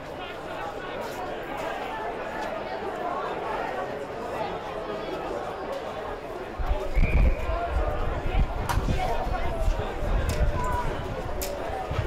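Voices of football spectators talking and calling out, with an irregular low rumble joining about halfway through.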